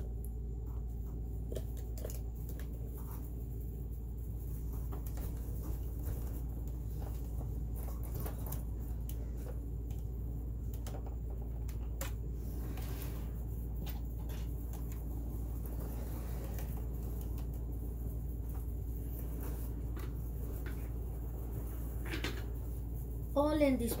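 Scattered light clicks and knocks of the plastic housing and parts of a Janome MC10000 sewing machine being handled and refitted, over a steady low hum.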